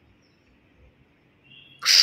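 A single loud finger snap near the end, sharp and bright.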